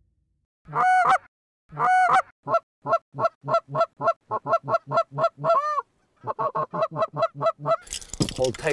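Canada goose call blown by hand: two long honks, then fast runs of short honks at about four to five a second, broken by a short pause about six seconds in.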